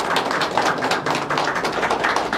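Applause: many people clapping steadily.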